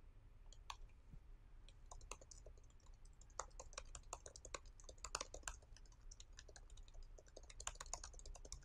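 Faint typing on a computer keyboard: a quick, irregular run of key clicks.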